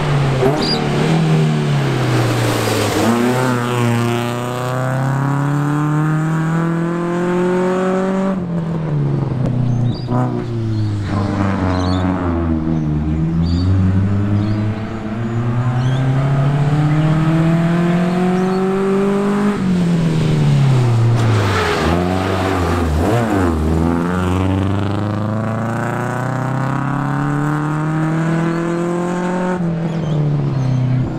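Hyundai Excel rally car engine at full throttle, its pitch climbing over several seconds and then dropping sharply at gear changes and lifts, several times over, with falling sweeps as the car passes.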